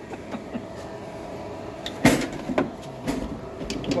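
A sharp knock about halfway through, followed by two lighter knocks, over a faint steady hum.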